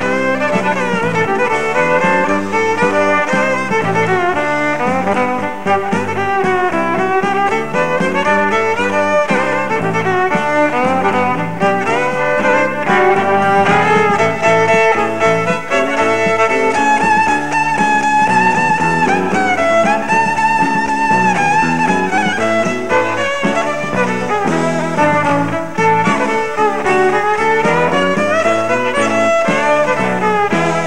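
Folk-rock band playing an instrumental tune live, a fiddle leading the melody over electric guitar, bass guitar and drums.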